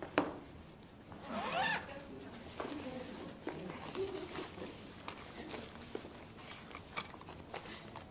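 Classroom room noise during quiet writing: scattered small clicks and rustles, with a brief voice about a second and a half in.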